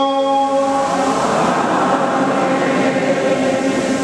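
A held sung chant ends about a second in, giving way to a loud, dense and steady noise with no clear pitch that lasts to the end.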